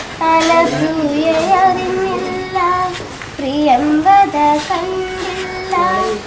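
A girl singing solo without accompaniment: long held notes joined by sliding, ornamented turns, in phrases with short breaths between them.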